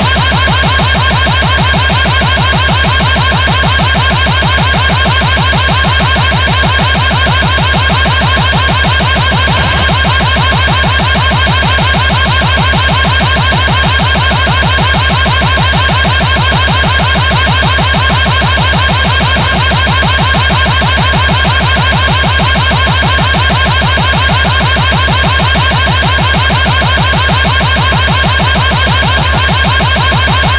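Loud electronic horn tone from a DJ competition remix, held at one fixed pitch and chopped into a fast, even pulse that never lets up.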